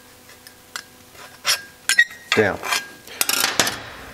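Light metal taps and clinks from a steel square and scribe handled against a painted sheet-steel engine air guide. About three seconds in comes a short, dense scratching as the scribe is drawn along the metal to mark a cutting line.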